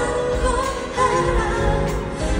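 A woman singing live into a handheld microphone, holding notes that glide between pitches, with acoustic guitar and keyboard accompaniment, heard through a concert sound system from the audience.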